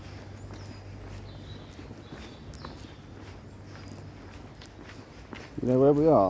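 Footsteps walking steadily on a tarmac path, about two steps a second. Near the end comes a short, loud voice call that rises in pitch.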